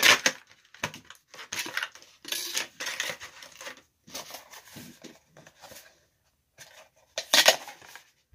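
Clear plastic packaging tray and cardboard insert being handled and pressed together: a run of irregular crinkles, clicks and rustles, with the sharpest click right at the start and a loud crinkle about seven seconds in.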